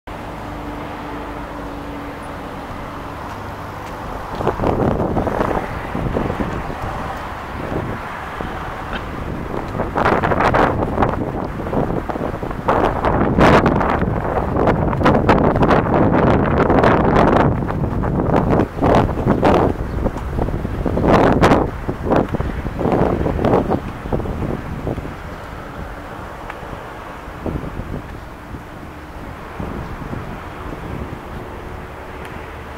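Gusty wind buffeting the microphone, in irregular blasts that are loudest from about four seconds in to about twenty-four seconds in, over a steady low outdoor background hum.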